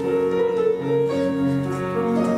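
Classical piano music playing, chords of held notes over a lower bass line.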